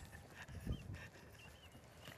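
Faint outdoor background with a soft low thump a little past a third of the way in and a few short, faint high chirps.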